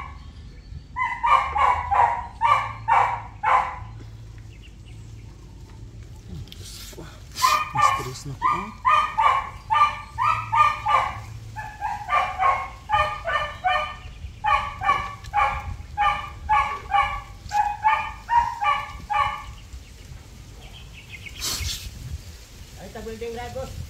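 A dog barking in quick runs of about two to three barks a second: a short run, a pause of a few seconds, then a long run.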